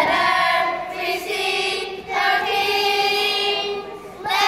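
Children's choir singing together, holding long notes in two phrases with a brief break about two seconds in.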